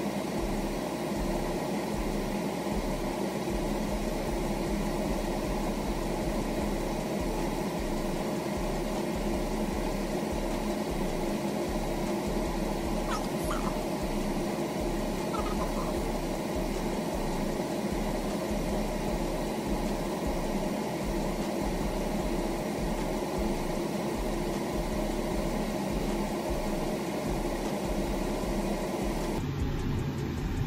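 A steady hum made of several held tones, unchanging throughout.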